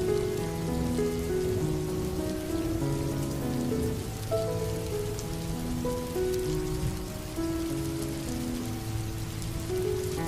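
Steady rain falling, with a slow piano melody playing over it, one held note after another.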